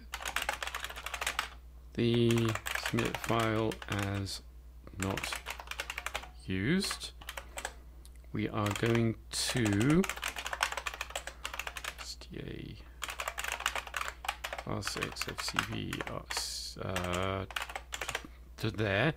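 Typing on a computer keyboard: runs of quick key clicks with short pauses, as lines of code are entered. A man's voice can be heard speaking indistinctly in a few short stretches between the keystrokes.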